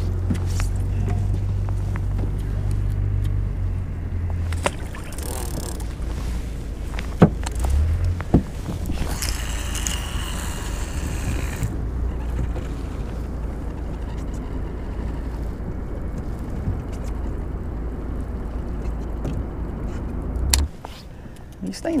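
A boat motor runs with a steady low hum, with a couple of sharp knocks about seven and eight seconds in and a rush of noise from about nine to twelve seconds. The hum cuts off suddenly near the end.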